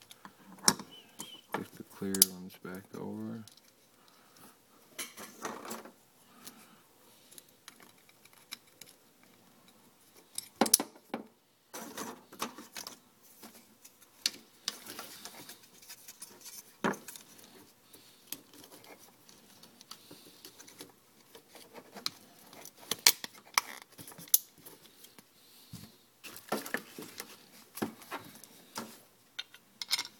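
Plastic clicks and light clatter from a GM PCM wiring-harness connector being handled and fitted together, its housing, cover and terminals knocking and snapping with scattered sharp clicks throughout. A short hummed voice sound comes about two seconds in.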